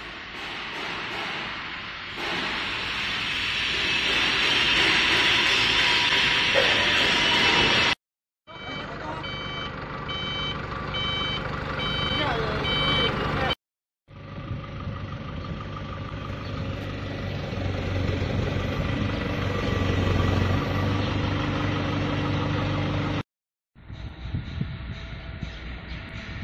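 Engine and machinery noise in several short stretches cut apart by brief silences. In one stretch a reversing alarm beeps at an even pace. In another, a forklift's engine runs with a steady low hum while it lifts a load.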